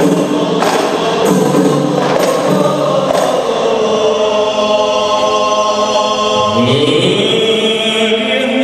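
A men's rebana ensemble singing a qasidah song in unison to their frame drums. Drum strokes sound through the first three seconds or so, then long held sung notes, with the voices sliding upward about six and a half seconds in.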